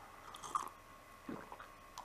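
A man sipping and swallowing from a cup: a few faint mouth and gulping sounds, about half a second in and again a little past one second.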